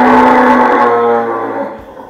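Water buffalo lowing: one long, loud call that holds its pitch and fades out shortly before the end.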